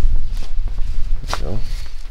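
Steady low rumble of wind on the microphone, with a few light clicks and knocks as the teardrop trailer's rear galley hatch is lifted open on its struts.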